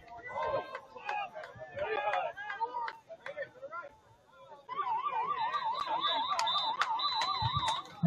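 A siren warbling rapidly up and down in pitch, about four to five times a second, starting a little past halfway and stopping just before the end; before it, voices call out.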